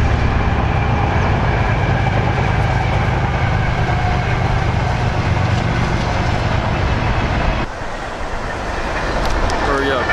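Freight train passing behind the trees, a loud steady rumble of rolling cars that eases off somewhat near the end.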